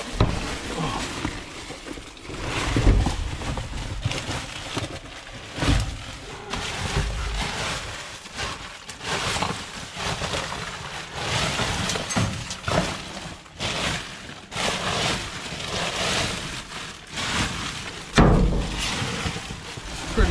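Plastic bags and wrappers rustling and crinkling as trash is pushed and pulled about, in a dense irregular crackle, with a few dull thumps.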